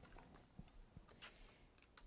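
Near silence: room tone with a few faint light clicks as hands handle a stamp-positioning platform.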